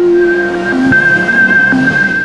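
Electronic outro music: a steady high tone held throughout, with short low notes about a second apart.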